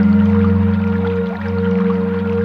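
Slow ambient relaxation music of long held pad tones sustaining a steady low chord, over the continuous plashing of a small woodland creek.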